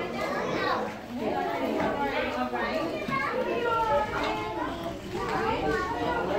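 Many children's and adults' voices chattering over one another in a busy classroom, with no one voice standing out.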